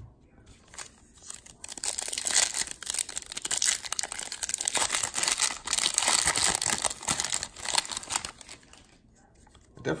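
Plastic wrapper of a 2019 Bowman baseball card pack crinkling and tearing as it is ripped open by hand, starting about a second and a half in and dying away near the end.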